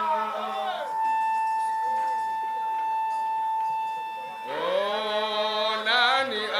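Man singing a Swahili qaswida (Islamic devotional song) into a microphone. About a second in, the melody gives way to one steady high note held for about three and a half seconds, then the melodic singing resumes.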